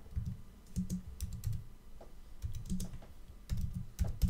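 Typing on a computer keyboard: a short run of irregularly spaced keystrokes.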